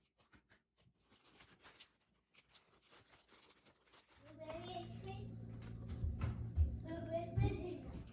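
Faint light clicks of banana slices and a plastic zip-top bag being handled. About four seconds in, a steady low hum begins, with a child's voice faintly heard and a few soft thumps.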